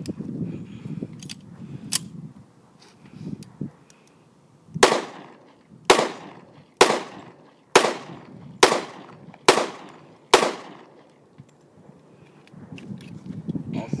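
Seven pistol shots from a .45 ACP 1911, fired evenly about one a second, with a couple of faint clicks just before. The string runs without a stoppage: the decades-old magazine feeds all seven rounds despite its spring set.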